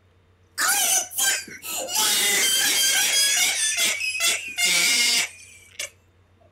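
A person's high-pitched, wavering shrieking, loud and long. It starts about half a second in and runs in three or four long stretches until just past five seconds, with one short squeal near the end.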